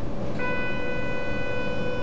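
A steady, single-pitched electronic tone starts about half a second in and holds, over a low steady hum, as the Storz AIDA compact colposcopy imaging system starts up.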